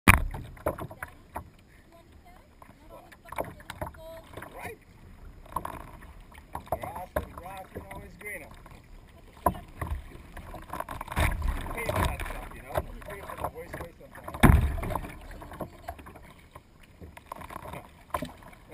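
Kayak paddle strokes dipping and splashing in the water beside the hull, heard close up from the deck, with irregular knocks and slaps against the hull. There is a sharp knock at the very start and a heavy low thump about fourteen and a half seconds in.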